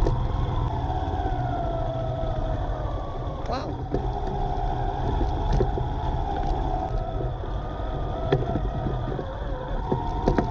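Small motorbike engine running at low speed, its pitch drifting slowly with the throttle, over wind rumble on the microphone. Scattered small knocks come from the bumpy lane, and there is one brief rising squeak about three and a half seconds in.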